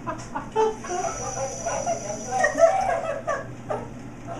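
Talking toy toucan making a run of broken bird calls through its small speaker.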